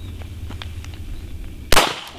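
A single pistol shot about three-quarters of the way through, sharp and loud. A few faint clicks come before it.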